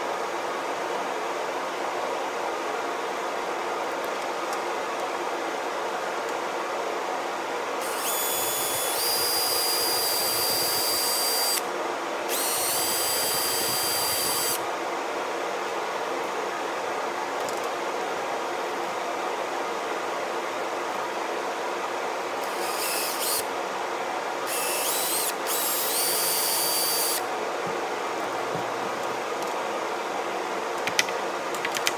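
Cordless drill with a bit, run in five short bursts to drill a broken plastic piece out of a windshield washer nozzle. Each burst spins up into a high whine: two longer ones about eight and twelve seconds in, then three shorter ones from about twenty-two seconds. A steady hum runs underneath.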